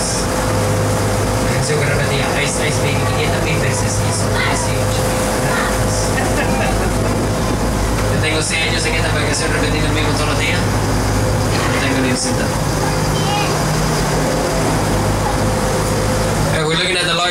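Tour boat's engine running with a steady low drone and a constant hum, under indistinct voices on board.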